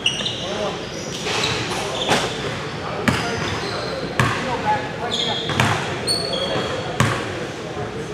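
Basketball bouncing on a hardwood gym floor, five or six sharp bounces about a second apart, echoing in the large hall, with sneakers squeaking on the floor between them.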